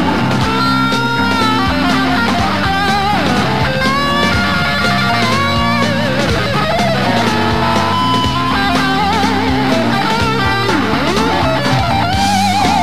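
Live rock band playing, led by an electric guitar playing lead lines with wide vibrato and string bends over bass guitar and drums.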